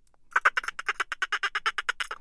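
Ring-tailed lemur calling: a rapid series of short chattering calls, about ten a second, starting a moment in.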